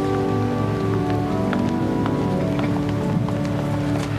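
Church organ holding sustained chords, with scattered small clicks over it.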